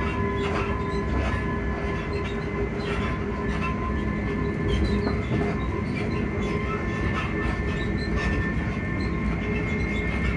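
Class 334 Juniper electric multiple unit heard from inside the carriage while running: a steady rumble of wheels on rail under a steady whine from the traction equipment, with scattered faint clicks from the track.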